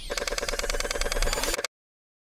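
Rapid, evenly spaced electronic ticking sound effect with steady ringing tones, cutting off suddenly near the end: an animated-logo effect that accompanies text typing onto the screen.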